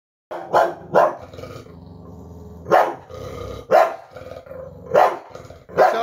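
Bulldog barking in alarm at a piece of wrapping paper it is afraid of: six short, sharp barks spaced irregularly, with a low growl between them.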